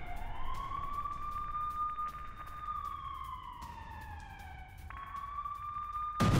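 A wailing siren: its tone rises over about a second, holds, falls slowly, then jumps back up near the end.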